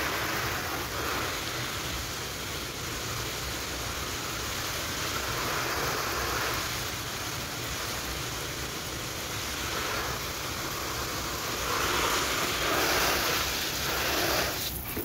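Garden hose pistol-grip spray nozzle on a shower setting, spraying water onto leafy plants and flowers: a steady rushing hiss that swells a few times.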